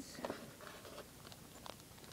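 Faint handling noise of small accessory parts being picked up: a few light clicks and rustles.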